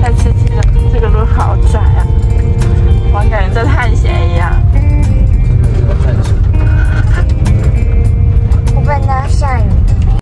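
Car driving along a rough dirt track, heard from inside the cabin as a loud, steady low rumble.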